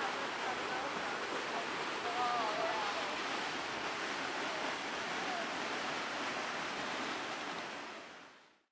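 Waterfall rushing steadily below the bridge, an even roar of falling water that fades out near the end.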